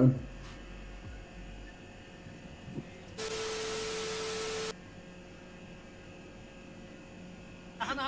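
Low steady hum, broken about three seconds in by a burst of TV-static hiss with a steady test-tone beep under it. The static lasts about a second and a half and cuts off suddenly.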